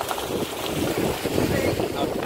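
Wind buffeting the microphone over the rumble of a car driving along an unpaved back road.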